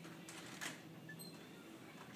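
Near silence: faint room tone, with one soft tap just over half a second in.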